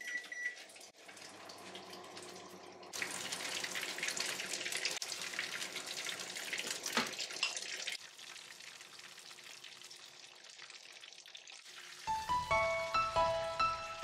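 A microwave oven beeps once as its button is pressed, then hums as it runs. From about three seconds in, patties sizzle and crackle as they shallow-fry in oil in a frying pan, easing off after about eight seconds. Background music with a melody comes in near the end.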